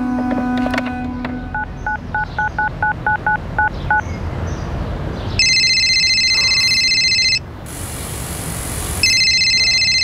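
Push-button telephone keypad tones: about eleven short two-tone beeps in quick succession as a number is dialled. Then a telephone ringing in two electronic bursts of about two seconds each, with a pause between them.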